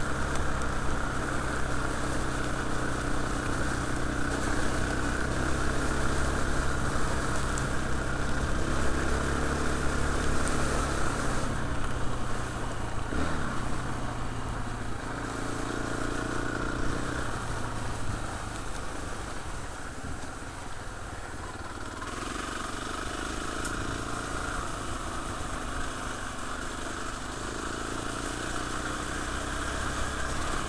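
KTM Freeride 350 single-cylinder four-stroke trail bike engine running under way. The engine note drops back about a third of the way in, and it runs quieter after that.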